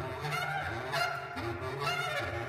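Contemporary chamber music for bass clarinet and voices: a repeating pattern of low bass-clarinet notes, with higher pitched sounds sliding above them.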